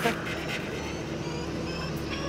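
Steady low rumble of idling cars, with faint music underneath.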